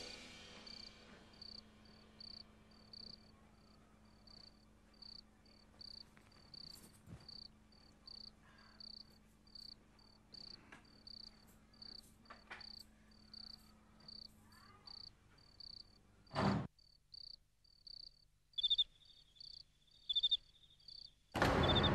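Crickets chirping steadily at night, short high chirps about one and a half a second, with a single sharp knock about sixteen seconds in. Near the end a second cricket joins at a lower pitch, chirping in quick runs.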